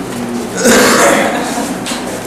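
A man makes a single loud, rough throat sound lasting about half a second, starting a little over half a second in.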